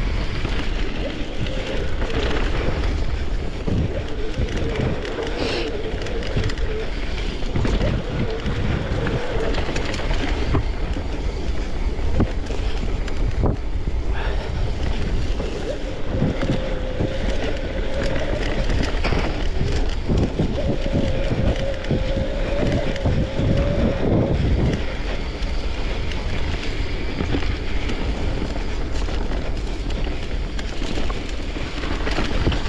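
Mountain bike being ridden over rough, wet ground: wind on the microphone and tyre rumble, with scattered knocks and rattles. Twice a wavering mid-pitched tone holds for several seconds, first near the start and again in the middle.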